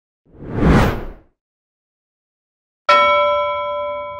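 Whoosh transition sound effect swelling and fading about half a second in, then a sharp bell-like ding near the end, ringing on with several clear tones as it slowly fades.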